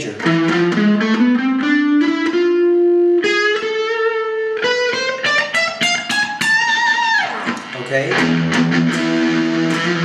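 Ernie Ball Music Man Silhouette electric guitar playing the E Phrygian dominant (Phrygian major) scale one note at a time, climbing steadily from low E for about seven seconds. A high note near the end slides down in pitch, and lower notes ring after it.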